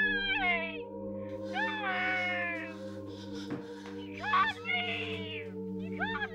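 Three drawn-out wailing cries, each rising and then falling in pitch, over a steady low drone.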